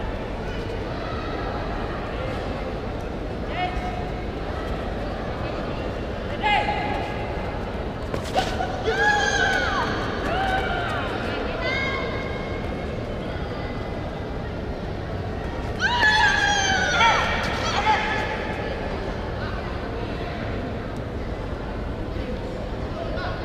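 Short, high-pitched kiai shouts from women karate fighters during a kumite exchange: a few sharp yells a third of the way in, and the loudest burst of them about three-quarters through. Steady sports-hall crowd murmur underneath.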